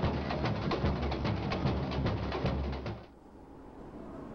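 Samba school percussion band (bateria) playing a fast, dense rhythm over deep drums; it cuts off abruptly about three seconds in, leaving a much quieter background.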